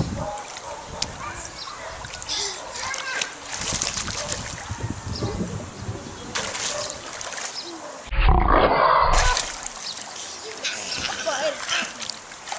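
Pool water splashing as a child swims and surfaces, with children's voices around. About eight seconds in, a loud low rumble lasts about a second.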